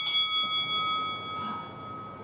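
Interval timer bell rung at the end of a workout round: a few quick strikes, then a clear ringing tone that slowly fades.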